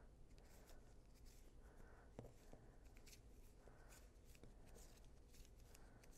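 Near silence with faint, scattered clicks and rustles of bamboo knitting needles and wool yarn being worked stitch by stitch.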